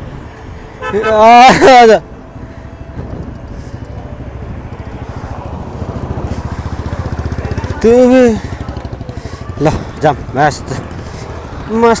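Royal Enfield motorcycle engine running close by with a low, rapid, steady pulse, growing louder over several seconds as the bike draws alongside. Loud voices shout over it about a second in and again about eight seconds in.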